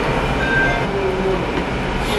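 Restaurant room noise: a steady low rumble with faint background voices.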